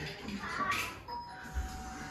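Two-note electronic chime, a higher tone about a second in followed by a lower one, over faint rustling.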